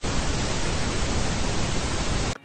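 Loud, steady hiss of TV-style static, an edited-in transition effect, starting abruptly.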